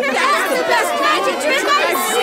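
Several cartoon voices chattering and exclaiming over one another, with no clear words.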